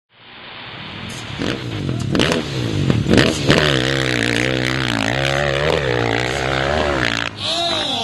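Dirt bike engine at full throttle on a steep hill climb, its pitch wavering up and down as the rear wheel spins and grips, after a few sharp pops. Near the end the sound cuts to a different engine note that rises and falls in quick arcs.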